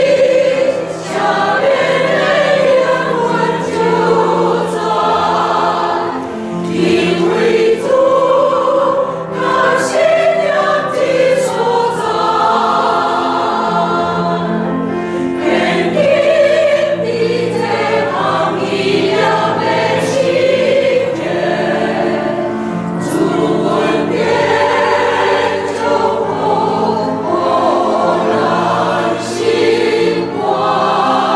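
Mixed church choir of men and women singing together.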